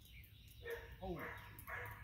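A retriever giving two short barks about a second apart.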